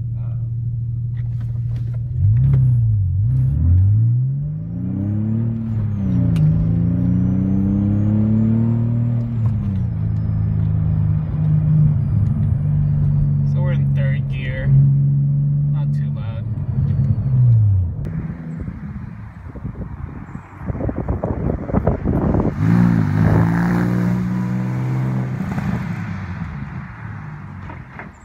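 Porsche 911 (997) flat-six breathing through a Fabspeed Supercup track exhaust and cold air intake, heard from inside the cabin while accelerating through several gears: the engine note rises with the revs and drops at each upshift, then runs steadily at cruise. Near the end the sound changes to the car accelerating heard from outside, then fading away.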